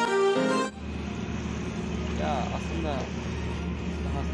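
Violin background music that cuts off abruptly under a second in. It gives way to open-air street ambience: a steady low traffic rumble with brief faint voices.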